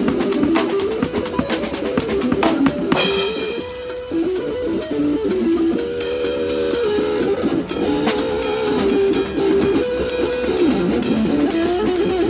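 Live amplified electric guitar playing a blues-rock lead line with pitch bends, over a beat on a snare drum, cymbals and a stand-mounted tambourine.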